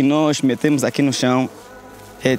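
A man speaking in a language other than English, his voice filling most of the two seconds before dropping away near the end.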